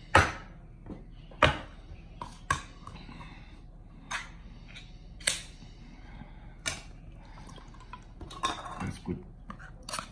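Tins of tuna being handled and opened: scattered sharp metallic clicks and clacks, about nine in all, spaced irregularly.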